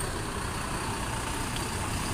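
Mercedes-Benz OH1626 bus's diesel engine running as the bus moves slowly past at walking pace, a steady low rumble.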